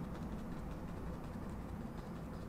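Faint, steady room noise with a low hum, and no distinct sounds standing out.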